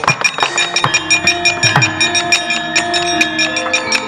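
Javanese gamelan music accompanying a wayang kulit shadow-puppet play: bronze metallophones and gongs ringing with held tones, fast regular sharp clattering strokes, and drum strokes that drop in pitch.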